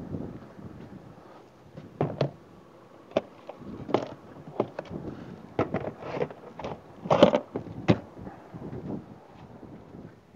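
Plastic cassette toilet tank knocking and scraping as it is pushed back into its compartment in the side of a motorhome, with a string of clunks and clicks. The loudest pair of knocks comes about seven and eight seconds in.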